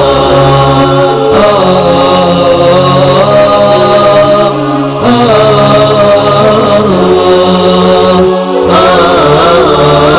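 Islamic nasheed: voices chanting in long, layered held notes with no clear drumbeat, dipping briefly near the end.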